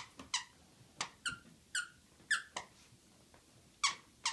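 A run of short, high-pitched squeaks, about eight in four seconds, each falling quickly in pitch, from a golden retriever and a merle puppy tugging at a plush toy.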